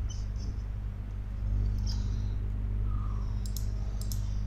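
Steady low electrical hum, with faint computer mouse clicks, two close together about three and a half seconds in.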